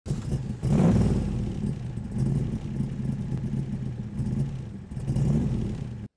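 A motor vehicle engine running, revving up about a second in and again near the end, then cutting off suddenly.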